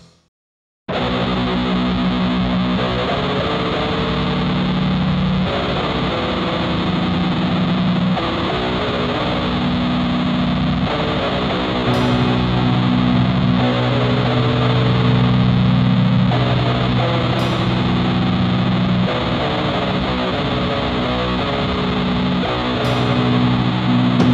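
Black/doom metal: after under a second of silence, heavily distorted guitars come in suddenly with sustained low chords that change every few seconds, with a few sharp crashes later on.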